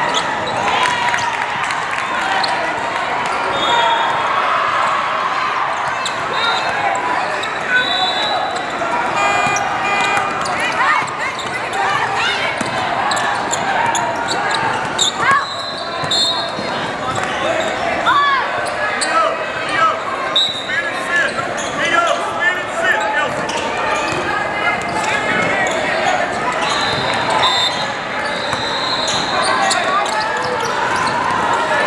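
Gym ambience in a large, echoing hall: many voices talking and calling at once, with basketballs bouncing on the hardwood court as short, sharp knocks scattered throughout.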